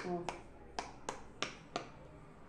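About six sharp, separate clicks of a hard plastic frog-shaped push-bubble toy being handled and turned over in the hands.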